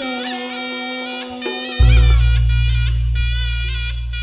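Reog gamelan music: a slompret (Javanese shawm) plays a reedy, wavering melody. About two seconds in, the large hanging gong is struck once, very loud and deep, and rings on, slowly fading.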